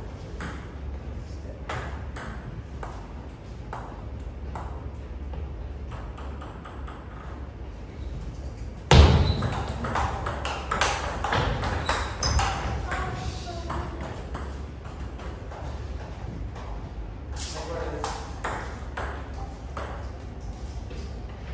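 Table tennis ball clicking off rackets and table in quick succession during a rally, with a loud sudden hit about nine seconds in. Voices follow the hit and come again near the end.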